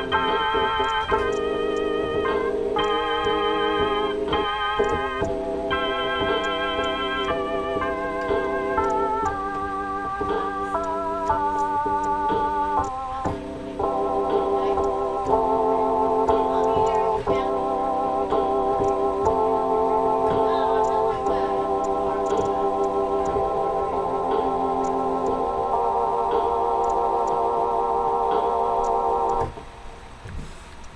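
Electronic keyboard with an organ sound playing the instrumental ending of a gospel blues song: sustained, wavering chords that change every second or two, stopping just before the end.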